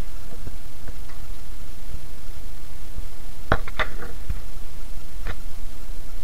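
Stock and rice boiling in an aluminium pot, a steady hiss, with a few light clicks about three and a half seconds in and again near the end.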